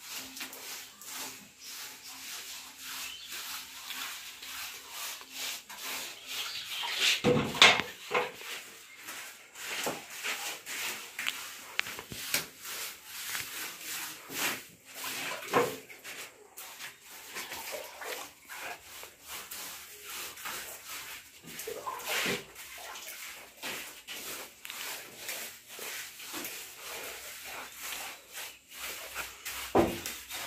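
Paintbrush scrubbing paint onto a rough plastered wall in repeated short strokes, with a louder knock about seven and a half seconds in.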